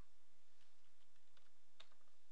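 Faint computer keyboard typing: a few soft key clicks, with a sharper click near the end, over a steady low hiss.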